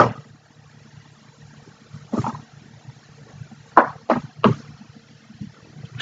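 Quiet room tone with a steady low hum, broken by a few short clicks: one about two seconds in and three in quick succession around four seconds.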